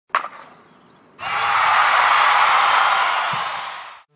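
Logo ident sound effect: a single sharp crack, then after about a second a loud, steady rush of noise that lasts about two and a half seconds and fades out.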